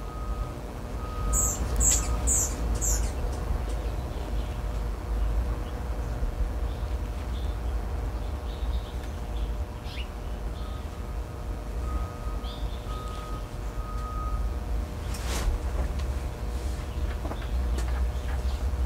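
A small bird chirps four quick, high notes about a second in, over a steady low outdoor rumble. A faint string of short repeated notes sounds at the start and again in the second half.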